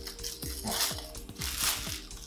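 Clear plastic packaging bag crinkling as it is worked open by hand, in two short bursts, over soft background music.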